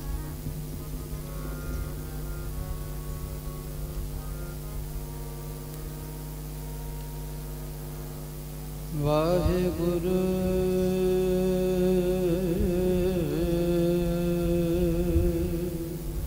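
Kirtan: a harmonium holds steady drone notes, and about nine seconds in a singer's voice comes in over it, sliding up into long held, slightly wavering notes, louder than the harmonium alone.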